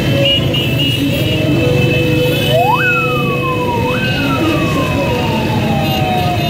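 A siren wailing over busy road traffic: its pitch climbs sharply about two and a half seconds in, sags, jumps back up about a second later, then falls away slowly. Steady held horn-like tones sound with it over the low traffic rumble.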